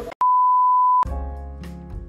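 A single steady electronic beep at one pitch, loud, cutting in abruptly and lasting just under a second, then stopping dead. Music with plucked notes starts right after it.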